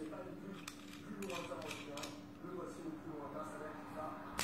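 Background speech with a steady low hum, and a few light clicks as the metal vape tank's parts are handled and fitted together.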